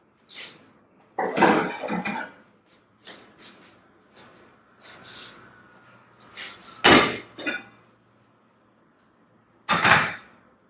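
Kitchen handling noises as containers of cherry tomatoes and onions are fetched: scattered knocks, rustles and clatters. The loudest is a sharp clatter about seven seconds in, with a faint low hum in the second half.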